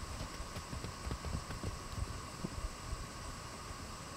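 Horse's hoofbeats on the sand footing of a round pen: irregular low thumps as it moves around, loudest about halfway through, over a steady hum.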